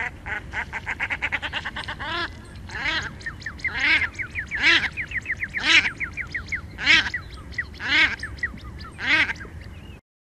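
Common shelduck calling: a fast run of short notes, about eight a second, for the first two seconds. Then come louder drawn-out calls about once a second, with quick, thin chattering notes between them.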